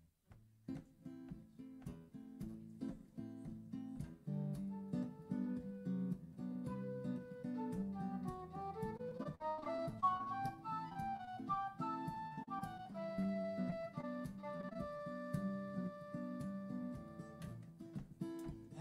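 Acoustic guitar playing a song's instrumental intro. About eight seconds in, a wind instrument joins with a slow melody that climbs and then settles into long held notes.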